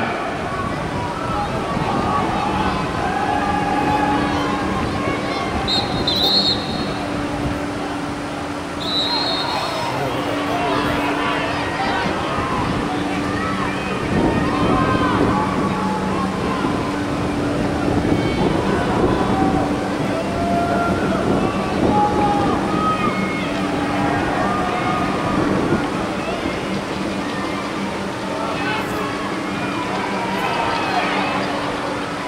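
Voices of lacrosse players and onlookers calling out during live play, over a steady low hum that drops out and returns. Two short high whistle-like tones come about six and nine seconds in.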